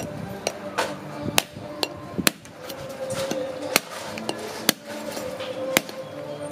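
A cleaver knocking on the hard, woody shell of a wood apple held in the hand: a series of sharp, irregularly spaced knocks, striking to crack the shell open.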